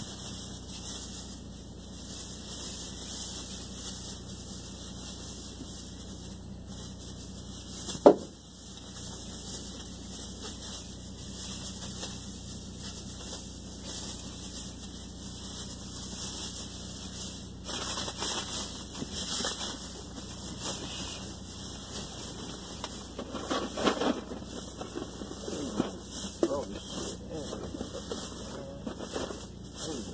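Groceries being lifted and shifted out of a car's back seat through the open rear door, with irregular rustling and handling noise that gets busier in the second half. A single loud thump about eight seconds in stands out above everything else.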